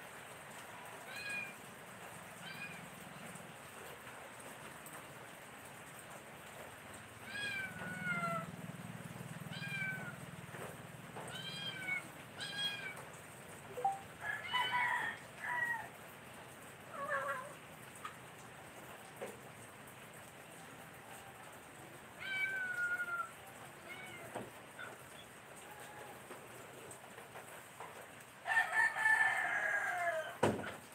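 Short pitched animal calls repeated every second or two, with a longer, louder call near the end.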